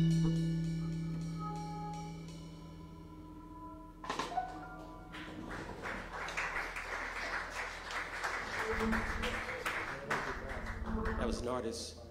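A live jazz quintet's closing chord, held and fading away, then audience applause breaking out about four seconds in and stopping just before the end.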